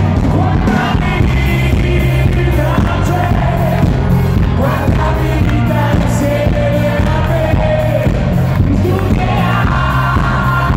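Live pop song: a male singer over a full band with heavy bass and a steady beat.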